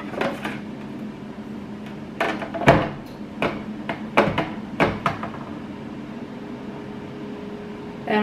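Aluminium drink cans knocking and clattering against a clear plastic can-organizer bin as they are set into it: a run of sharp knocks over the first five seconds, then quieter handling. A steady low hum sits underneath.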